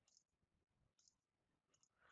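Near silence, with two faint computer mouse clicks about a second apart.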